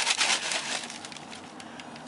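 A paper bag rustling and crinkling as it is handled and emptied, loudest in the first half second and then thinning to faint crackles.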